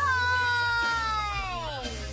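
Jingle music with a long, meow-like held note that slides steadily down in pitch in the second half, over a steady low bass.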